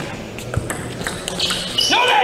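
Table tennis ball in a fast rally, with a few sharp clicks of the ball off the bats and the table. Near the end a voice rises into a shout.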